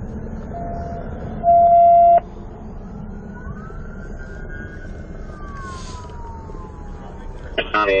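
A loud, steady electronic beep about a second in that cuts off suddenly, then a siren that glides up in pitch and slowly winds down, over a low rumble. A man's voice starts at the very end.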